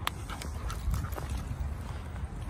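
Irregular footsteps crunching on loose wood-chip mulch, over a low steady rumble.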